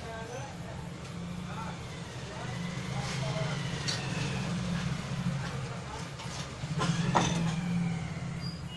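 A steady low hum or rumble in the background, with a few light clicks of small parts and tools being handled on a workbench; the loudest clicks come about seven seconds in.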